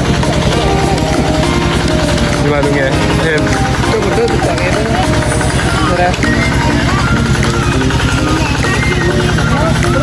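An engine running steadily close by, with a rapid, even low pulse, under the chatter of many people's voices.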